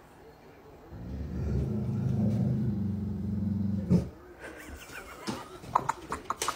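A dog growling low and steadily for about three seconds, ending in one sharp bark about four seconds in, followed by a few sharp clicks near the end.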